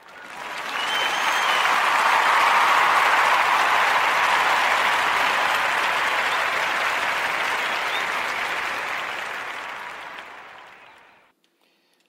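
Canned crowd applause used as a segment break. It swells in over the first couple of seconds, holds, then slowly fades out near the end.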